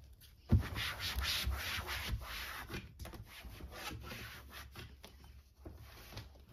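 A cloth wiping the side of a white cabinet panel in repeated rubbing strokes, louder in the first half and fainter later. There is a single knock against the cabinet about half a second in.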